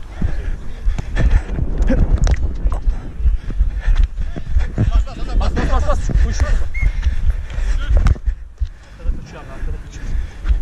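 Running footsteps on artificial turf heard through a body-worn action camera, as a string of quick thuds over a steady rumble of wind and jostling on the microphone. Players shout across the pitch, most clearly about halfway through.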